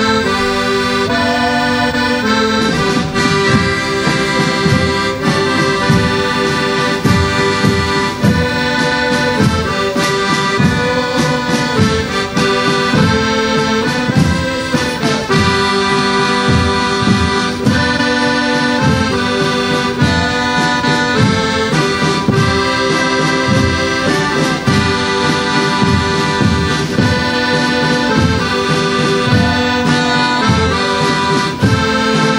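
Piano accordion playing a tune in held chords, joined about two and a half seconds in by a group of marching drums beating along.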